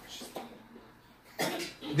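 A short cough about a second and a half in, during a pause in a man's speech, which resumes right after it.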